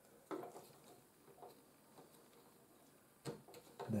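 Faint handling clicks and scrapes as a small OLED display module's pins are pushed into a header socket on a printed circuit board, the clearest click about a third of a second in.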